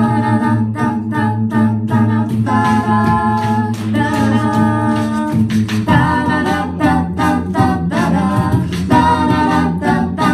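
An amplified a cappella group singing sustained chord harmonies, with a beatboxer keeping a steady beat underneath; the chords shift every second or two.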